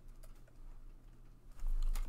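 A stylus pen tapping lightly on a tablet screen while handwriting numbers, a few faint, thin clicks. A low bump comes in near the end.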